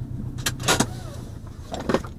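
Subaru Impreza WRX STI's turbocharged flat-four engine running steadily, heard from inside the cabin, with three short sharp noises over it, the loudest just under a second in.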